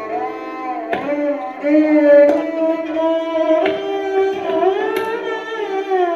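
Sarangi bowed in a slow classical melody: long held notes that slide smoothly up and down between pitches. A few soft tabla strokes fall beneath it.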